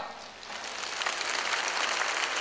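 Large audience clapping: the applause starts softly about half a second in and swells to a steady level.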